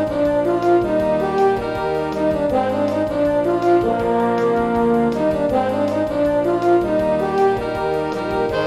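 Band music from a fanfare-style wind band: the horns and saxophones play a quick running melody over off-beat chords from the baritones and euphoniums, bass notes and a steady drum pattern, in a lively, even rhythm.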